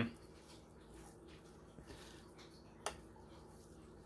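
Quiet room tone with a faint steady low hum, and one short sharp click about three seconds in.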